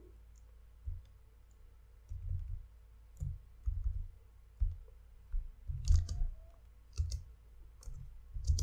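Computer keyboard keystrokes picked up by a desk microphone: irregular, mostly dull knocks spaced about half a second to a second apart, with a couple of sharper clicks near the end.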